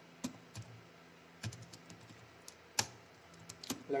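Typing on a computer keyboard: separate, irregular keystrokes with short pauses between them.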